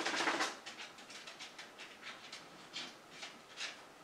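A fluffy makeup brush swept over the cheek: soft brushing strokes against skin. The first stroke is the longest and loudest, and lighter strokes follow roughly every third of a second.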